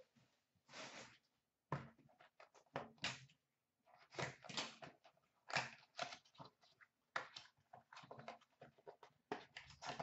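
Foil hockey card pack being torn and worked open by hand: a faint, irregular run of short rustling and ripping noises. The wrapper is hard to tear open.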